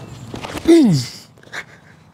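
A man's short grunt of effort, falling steeply in pitch, about two-thirds of a second in as he throws a disc golf driver, just after a few quick scuffs of his run-up steps on grass.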